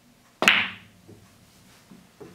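Sharp click of a pool shot, with the cue ball struck and driven into a pair of frozen object balls, about half a second in, ringing briefly. A couple of faint ticks follow.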